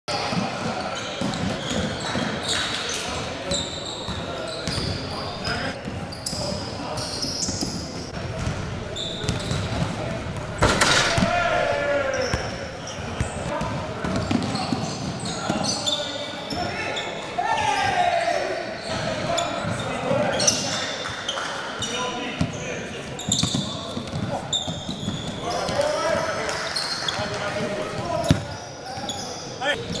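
Live basketball game sound in an echoing gym: a ball bouncing on the hardwood, sneakers squeaking, and players and onlookers shouting, with one sharp loud hit about ten seconds in.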